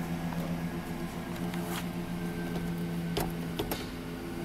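A few sharp clicks from a column shift lever being worked against the park lock, over a steady low hum in the truck cab. The lever will not come out of park with the brake held: the brake-shift interlock stays locked, tied to a brake switch circuit fault (code C0161).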